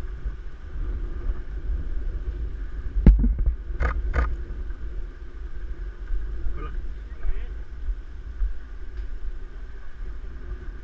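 Wind buffeting a head-mounted action-camera microphone as a steady low rumble. A few sharp knocks come about three to four seconds in, and faint voices are heard later.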